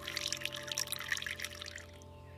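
Thin stream of water poured into a clay teapot over loose tea leaves, a continuous splashing trickle that stops near the end.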